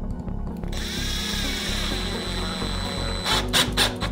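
Electric drill running with a steady whine as it drives a wood screw into a pine block, followed near the end by several sharp loud clicks.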